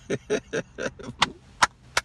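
A man's short bursts of laughter, then about three sharp claps of his hands in the second half.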